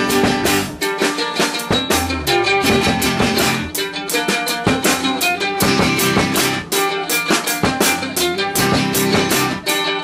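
A small band playing an instrumental intro: strummed electric-acoustic guitar over a steady drum-kit beat.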